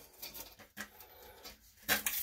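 Faint handling noises: a few soft rustles and light taps as hands handle a packaged replacement flush-valve seal and a plastic toilet-tank cylinder.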